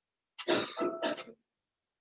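A person coughing to clear their throat, once, about a second long, starting about half a second in.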